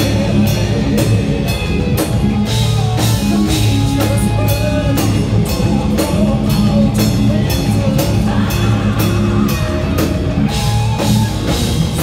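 Heavy metal band playing live and loud: distorted electric guitars and bass over a drum kit keeping a steady, fast beat of cymbal and snare hits.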